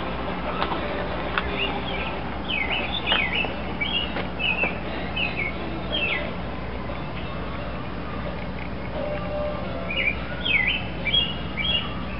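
Small birds chirping in two short bouts of quick, high notes, a few seconds in and again near the end, over a steady low background hum.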